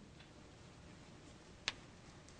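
Quiet room tone with a single short, sharp click about three-quarters of the way through.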